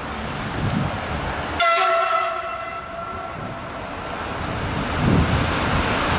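Siemens Vectron electric locomotive's horn gives one long blast, starting suddenly about a second and a half in and dying away about two seconds later. This is the Rp1 'attention' warning signal. Wind rumbles on the microphone, and the noise of the approaching freight train grows near the end.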